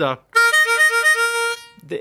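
Hohner Pentaharp harmonica playing a quick trill, rocking back and forth between two neighbouring notes for a little over a second. On this tuning it doesn't sound good.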